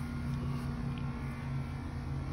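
A steady low mechanical hum with an unchanging low drone, like a motor running nearby.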